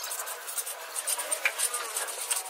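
Hand tools scraping and working through a wet sand-and-cement screed mix: a quick, irregular run of short gritty scrapes and light taps.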